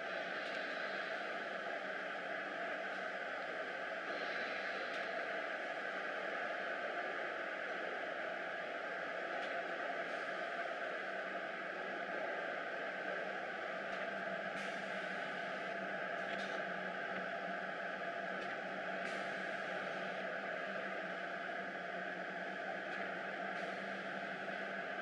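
FM-B automatic laminating machine running steadily, an even mechanical hiss and hum, with a few faint clicks in the second half.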